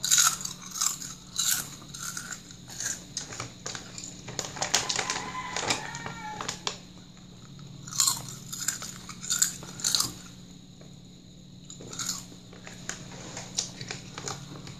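Calbee Honey Butter potato chips bitten and chewed close to the microphone: sharp, crisp crunches in clusters, with a dense run of crackling crunches around the middle and a short lull a little after ten seconds in.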